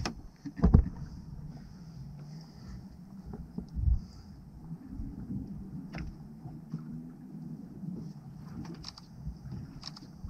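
Water lapping against the hull of a small boat drifting on calm sea, a steady low rumble. A loud thump comes about a second in and a duller one around four seconds.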